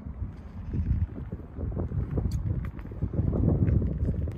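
Wind buffeting the microphone: an uneven low rumble that swells and fades, with a few faint ticks.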